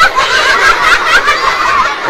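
High-pitched snickering laughter, wavering up and down in pitch.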